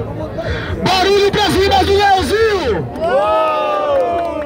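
Loud shouting by men's voices, too garbled to make out as words, with one long drawn-out shout about three seconds in.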